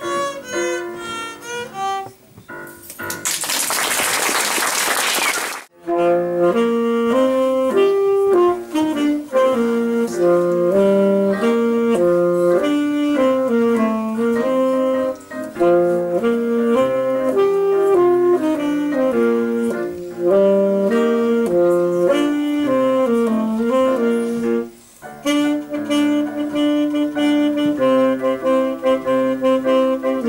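A violin with digital piano accompaniment ends its phrase, followed by a few seconds of applause. Then an alto saxophone plays a melody over a digital piano accompaniment, with a brief break near the middle.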